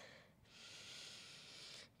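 A faint, long inhale of breath through the nose, starting about half a second in and lasting over a second.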